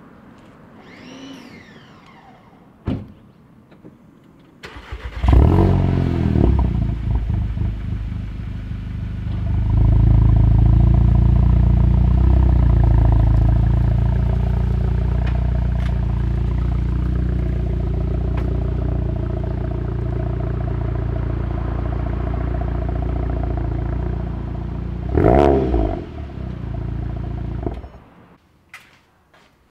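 Volkswagen Golf engine starting about five seconds in with a brief rev, then running steadily, louder from about ten seconds in, with another rise in revs near the end before it cuts off. A single sharp click comes shortly before the start.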